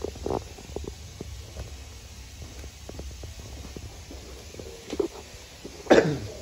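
Firewood burning in the firebox of a wood-fired stove: scattered small crackles and pops over a steady low rumble, with a louder burst near the end.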